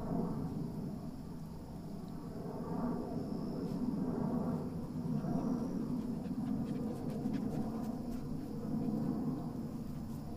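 A puppy panting in uneven swells, with a few faint clicks about seven seconds in.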